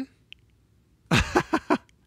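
A man laughing briefly: a few quick bursts starting about a second in, after a second of near quiet.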